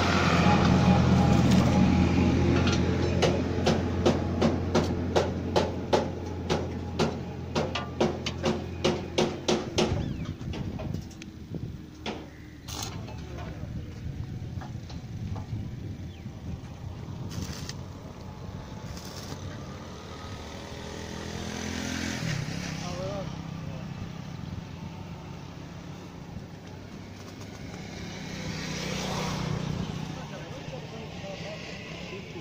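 A tractor engine running with a steady drone, joined by a run of sharp metallic knocks that speed up over several seconds. About ten seconds in the drone stops, leaving a quieter, uneven clatter that swells twice near the end.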